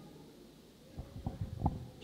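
Handling noise on a handheld microphone: a few soft low bumps close together about a second in, over quiet room tone.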